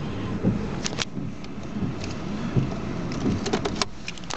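VW Polo 1.2 TDI three-cylinder diesel engine idling, heard from inside the cabin as a steady low rumble. A few short clicks and knocks come about a second in and again near the end.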